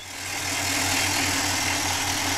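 Engine of a crawler rock-drilling rig running steadily under a continuous hiss. The sound fades in over the first half second.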